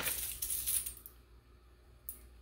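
A metal disc-link necklace jingling as it is pulled out of a small plastic zip bag, with light plastic crinkling, for about the first second.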